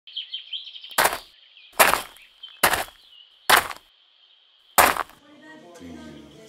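Five footsteps crunching on gravel, a little under a second apart, over birds chirping.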